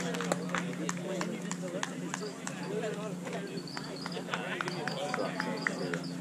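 Indistinct voices chattering at a ballfield, with a quick run of sharp clicks that thins out over the first second or so and a steady low hum underneath.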